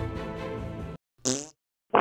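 Background music that cuts off about a second in, followed by two short cartoon sound effects: one with a bending pitch, then a brief burst near the end.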